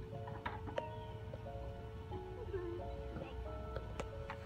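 Background music: a slow melody of held notes stepping up and down in pitch, with a few sharp clicks.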